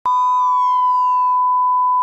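Intro sound effect: a steady, loud electronic beep, a heart-monitor flatline tone, held throughout and cut off suddenly at the end. A second pitched tone with overtones slides downward under it over the first second and a half.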